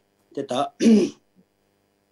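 A man clearing his throat: two short voiced sounds in the first second.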